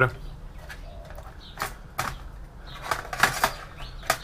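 Clicks and knocks of an optical drive being worked loose and slid out of its bay in a steel desktop PC case: a few separate sharp clicks, then a denser cluster about three seconds in.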